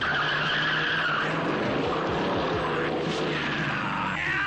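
Car tyres squealing in a skid, loudest in the first second or so and then trailing off into road and engine noise, as an action-film sound effect.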